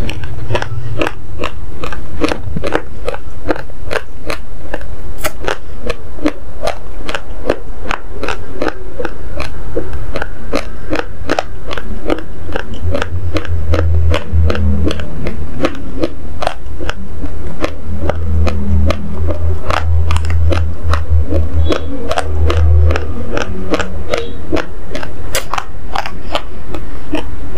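Close-miked chewing of uncooked basmati rice grains: a steady run of sharp, dry crunches, about three a second. A deep low rumble comes and goes partway through.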